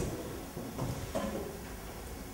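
A pause with no speech: lecture-hall room tone, a low steady hum with a couple of faint small noises.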